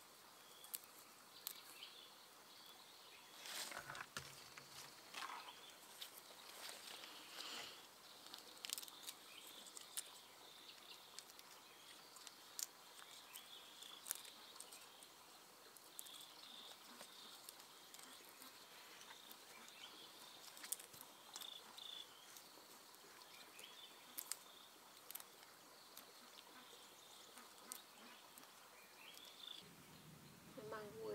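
Faint hand work on fresh flowers: soft rustling of leaves and stems with scattered small clicks and snaps as blossoms are pulled off their stalks, louder rustles about four and seven seconds in. A faint steady high insect drone sits under it.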